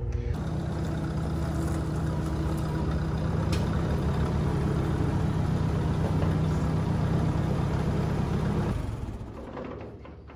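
Ford 960 tractor's four-cylinder engine running at a steady speed, fading out near the end.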